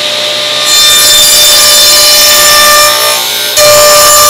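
Ridgid table saw running with a steady motor whine and cutting a shallow 3/16-inch tongue into a wooden board fed along the fence. The sound gets louder as the blade bites in under a second in, eases briefly a little past three seconds, then comes back loud as the cut goes on.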